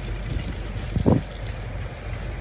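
A car engine idling with a steady low hum. A brief low thump about a second in.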